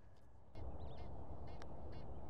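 Birds calling: a run of short, faint calls repeated a few times a second. Under them, a steady low rush comes up about half a second in.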